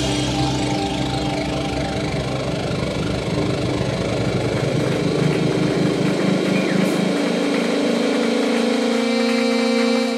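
A live rock band plays an instrumental passage, with a dense, droning mix of guitars, keyboard and drums. About six seconds in the low end drops away, leaving a steady held chord.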